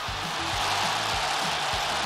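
Background music with a steady beat over a loud, even roar of stadium crowd noise after a penalty goal.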